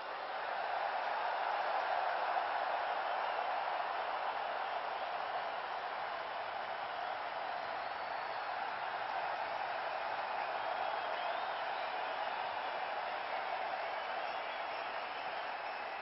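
Large stadium crowd applauding and cheering, swelling over the first couple of seconds and slowly dying down toward the end, with a few faint whistles.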